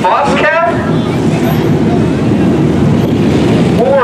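Several dirt-track hobby stock race cars' engines running together, a steady low rumble. A voice is heard briefly in the first second.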